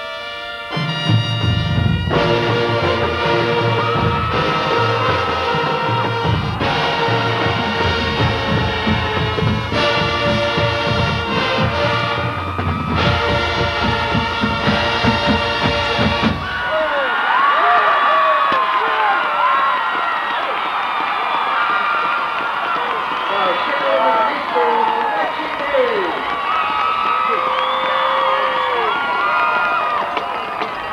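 Marching band brass and drums playing loud sustained chords with heavy drum hits, ending suddenly a little over halfway through. A stadium crowd then cheers, shouts and whistles.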